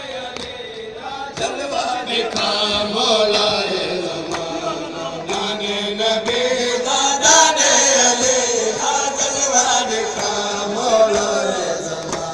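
A group of men chanting a noha, a Shia lament for Imam Hussain, with many sharp slaps of chest-beating matam mixed in. It grows louder about two seconds in.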